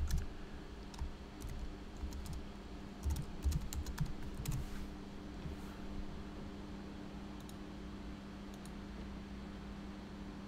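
Typing on a computer keyboard: a quick run of keystrokes over the first five seconds or so, then a couple of isolated faint clicks over a steady low hum.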